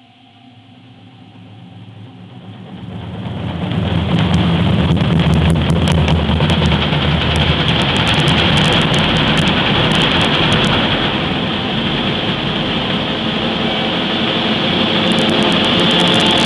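Concert band playing, building in a crescendo over the first four seconds from soft to loud and then holding loud, with full brass and repeated percussion hits.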